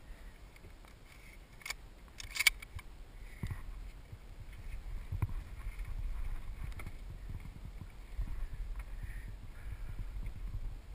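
Handling noise from a scoped hunting rifle being lifted out of an open Jeep: a click and then a sharp clack about two and a half seconds in. This is followed by low, uneven thumps and scuffs as the hunter steps out onto the dirt.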